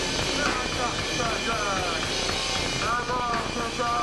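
Grindcore band playing live, through a camcorder microphone: a loud, dense distorted roar over fast low drum hits, with high squeals sliding down in pitch, several near the middle and more near the end.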